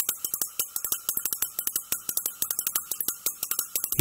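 Film-song intro played on percussion alone: a fast rhythm of short, dry taps, about eight a second, with no melody.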